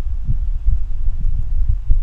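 A loud, low rumble on the microphone, pulsing with irregular soft thumps, with nothing higher-pitched above it.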